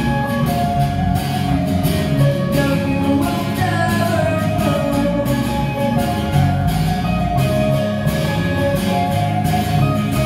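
A live rock band playing a song: strummed acoustic guitar, electric guitar and bass guitar, with a singer at the mic.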